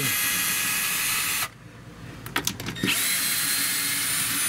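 Milwaukee cordless screwdriver backing out a 10 mm screw from a plastic boat floor panel. Its motor whines steadily for about a second and a half, stops, gives a few clicks, then spins up again about three seconds in.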